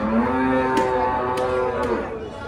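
A cow mooing: one long, steady call of nearly two seconds.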